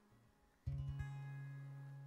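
Near silence, then about two-thirds of a second in, an acoustic guitar chord is strummed and left to ring, slowly fading. This is the opening of a worship song.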